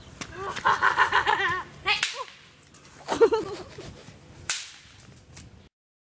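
Boys yelling while they play-fight: a wavering, high-pitched yell, then a sharp crack, a loud shout, and a second sharp crack about two and a half seconds after the first. The sound cuts off abruptly near the end.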